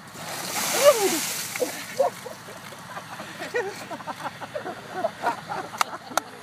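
Ice water dumped from two large drink coolers splashes down over a seated man, a loud hissing splash in the first second or so, with a cry falling in pitch from him as the cold water hits. Short excited voices follow, and a few sharp hand claps come near the end.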